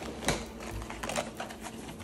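Groceries being handled and drawn out of a canvas tote bag: a run of rustles and light clicks and taps of packaging, with the loudest tap shortly after the start.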